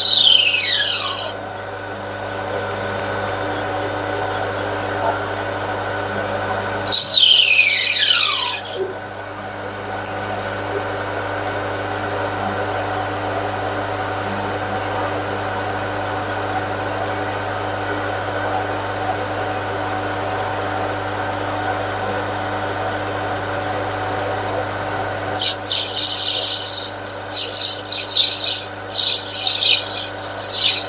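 Metal lathe running steadily as it turns a brass bar, a constant hum with several fixed tones. Two loud high squeals falling in pitch cut across it, right at the start and again about 7 s in, and from about 25 s on a burst of high, warbling chirps.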